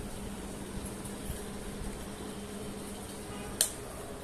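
Steady low room hum with a single sharp click about three and a half seconds in.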